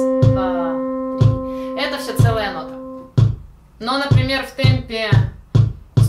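Electronic keyboard holding a single note for a whole note's four beats and fading slowly, over a metronome's low beat at 61 bpm, about once a second. A little past halfway the note is gone and the metronome beats faster, at 142 bpm.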